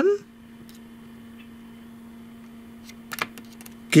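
A few light metallic clicks from alligator-clip test leads being handled and touched to a small hobby circuit, several close together about three seconds in, over a steady low hum.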